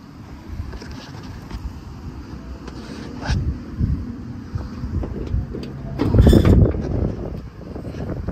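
Low handling rumble on a handheld microphone with a few light clicks. About six seconds in comes a loud clatter lasting under a second as the front trunk lid (hood) of a 1994 Volkswagen Beetle is unlatched and lifted open.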